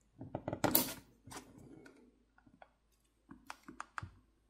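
A suction cup and a plastic pry pick being worked against a phone's glass screen and frame to start lifting the screen: a dense burst of clicks and rubbing in the first second, then scattered sharp clicks near the end.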